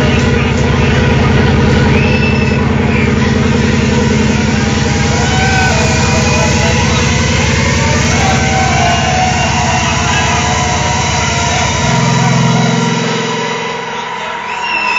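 Loud, distorted hard dance music over a club sound system: a dense, buzzing bass drone with no clear beat. About twelve seconds in, the deepest bass drops out, leaving a higher held tone.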